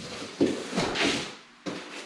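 A battery's shipping box and its packaging being opened and handled: several bursts of rustling and scraping, with a sudden knock near the end.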